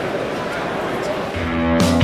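Background chatter and hubbub of a busy hall, then guitar music with a beat comes in about a second and a half in.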